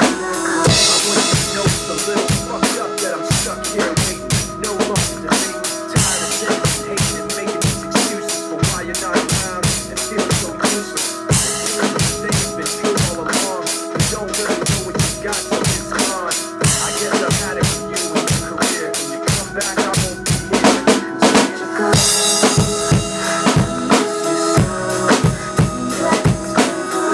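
Acoustic drum kit played in a steady hip-hop beat: bass drum, snare and cymbals over the song's recorded backing music. Cymbal washes come in about a second in and again near the end.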